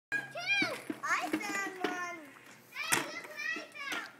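Young children's high, excited voices calling out in play, in two stretches with a short pause between them. A sharp click comes about three seconds in.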